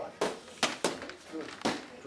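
Boxing gloves striking leather focus mitts in pad work, four sharp smacks in under two seconds, two of them close together.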